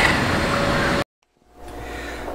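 Steady outdoor hum with a constant tone, cut off abruptly about a second in. After a moment of silence, a fainter low room hum fades in.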